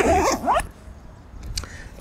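A dog whining briefly: a couple of short, rising whimpers at the start.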